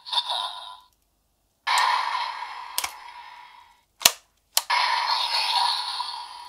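Electronic sound effects from the DX Venomix Shooter toy gun's speaker: one fades out, and after a short silence another plays for about two seconds. Two sharp plastic clicks follow a little after four seconds in, as the toy is worked, and a new sound effect starts.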